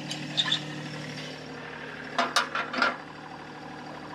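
A steel travel lock pin is worked out of the backhoe's outrigger bracket and slid into its storage holder: a few short metal scrapes and clinks about two to three seconds in. Under it the TYM T264 compact tractor's diesel engine idles steadily.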